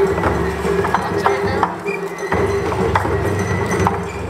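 Japanese festival music with long held tones in phrases and a steady beat of sharp knocks, about two or three a second, with crowd voices underneath.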